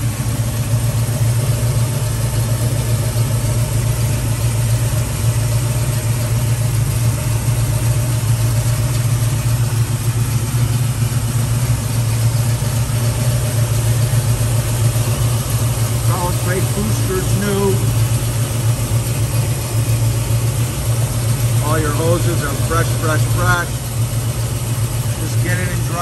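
A 1970 Ford Mustang Mach 1's 351 Cleveland V8, converted from a two-barrel to a four-barrel carburettor and freshly tuned up, idling steadily, heard close to the open engine bay.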